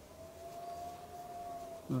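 A faint, steady high-pitched tone holding nearly one pitch, rising slightly and then easing back.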